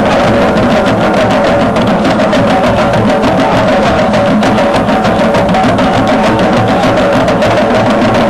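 A group of hand drums played together in a fast, steady drum-circle rhythm, with a steady drone behind the beats.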